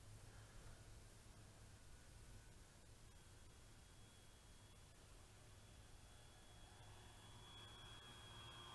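Near silence: a faint steady low hum, with a faint thin high tone coming in about three seconds in.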